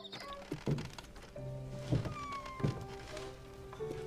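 Soft film score music with long held notes, over three dull thuds that fall about a second apart.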